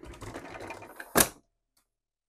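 Motorhome bedroom privacy door sliding along its track with a fast rattle, then shutting with a sharp knock a little over a second in.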